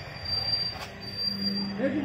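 Paper plate making machine running with a thin, steady high-pitched squeal. The squeal breaks off with a click near the middle, then resumes, and a low steady hum comes in during the second half.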